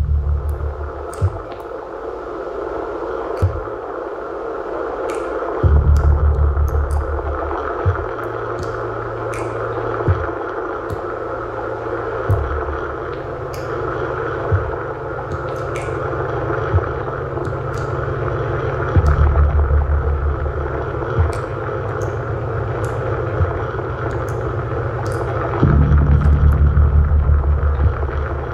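Live experimental electronic music from a modular synthesizer rig played from a keyboard controller. A steady noisy mid-range drone carries a sharp click about every two seconds, with short high chirps scattered over it. Deep pulsing bass swells come in several times: at the start, about six seconds in, around nineteen seconds, and near the end.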